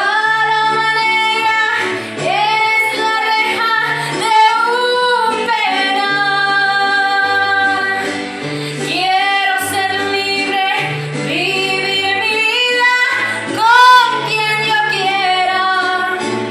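A woman singing into a handheld microphone, holding long notes with vibrato, loudest about four seconds in and again near the end, over an accompaniment of sustained low bass notes that change every second or so.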